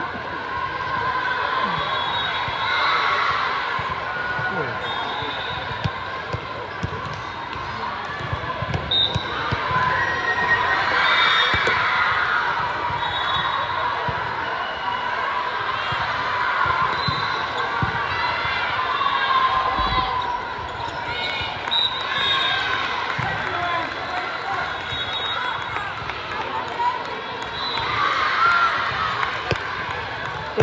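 Indoor volleyball gym: volleyballs being hit and bouncing on the court with repeated knocks, over chatter and calls from players and spectators, echoing in a large hall.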